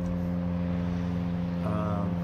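A steady low mechanical hum with a few held tones, the sound of a motor or engine running without change.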